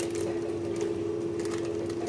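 A steady mechanical hum holding one unchanging pitch, with faint crinkling of a food packet being handled.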